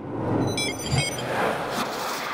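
Channel logo sting sound effect: a noisy whoosh with a quick run of short, high electronic blips and a low hit about a second in, then a fading tail.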